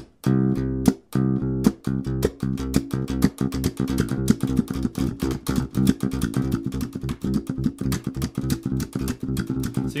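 Electric bass played with the double-thumb slap technique in a triplet pattern: thumb down on the muted A string, a left-hand hammer-on of the note (starting on C), then thumb up on it, giving a fast, even stream of percussive clicks and low notes. The playing breaks off briefly about a second in, then runs on steadily.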